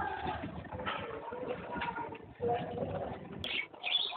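Busy ambience with low bird calls and general bustle, cut off abruptly about three and a half seconds in. Brief high chirps from caged cockatiels and budgerigars follow.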